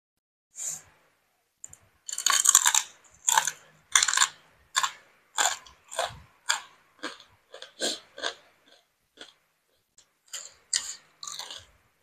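Close-up chewing of crunchy fried salted fish: crisp crunches, a dense run early on, then about two a second, then a pause and a short final run near the end.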